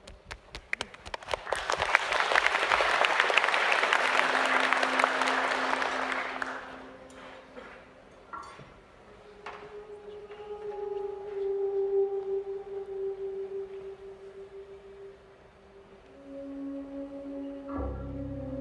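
Audience applause that swells over the first couple of seconds and dies away by about seven seconds in, followed by the slow opening of a dark-jazz piece: long, held single notes, with a deep bass note coming in right at the end.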